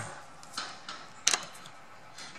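A faint tick, then a single sharp metallic click about a second and a quarter in: a screwdriver tip meeting a motor-mount screw in the mixer's metal housing.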